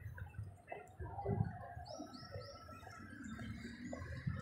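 Faint outdoor street background with an irregular low rumble, and three quick high chirps in a row about two seconds in.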